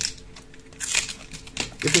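Adhesive tape being peeled off a battery pack's wrap, a short crackling rip about a second in.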